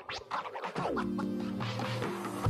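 Music with turntable-style scratching and a falling pitch sweep about halfway through.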